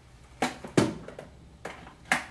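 A few sharp knocks and clatters of small craft supplies being handled and set down on a tabletop, the loudest just under a second in.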